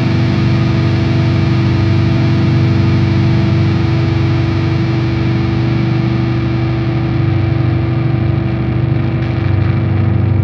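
Slam/brutal death metal instrumental passage: heavily distorted electric guitars hold a dense, steady low riff, with no vocals.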